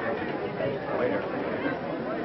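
Indistinct chatter of many people talking at once, a steady babble of voices.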